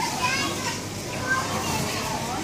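Overlapping chatter of shoppers' voices, some of them children's, in a supermarket.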